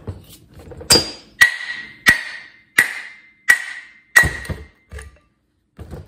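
A hammer driving the shaft out of a riding-mower deck spindle, the older Husqvarna design with sealed bearings. About six hard metal-on-metal blows fall at a steady pace, roughly one every 0.7 s, and each rings briefly.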